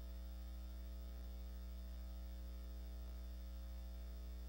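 Steady electrical mains hum with a stack of overtones and a faint hiss underneath, unchanging throughout.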